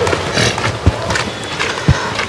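Footsteps walking on a dirt and gravel lane, a step about every half second.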